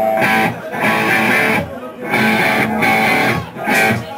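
Rock band playing live, led by loud electric guitar chords in a stop-start riff, with short breaks about once a second.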